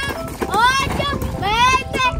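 Quick running footsteps on a gravel road, under high-pitched voices calling out with swooping pitch.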